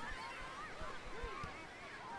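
A flock of birds calling faintly, with many short rising-and-falling cries overlapping.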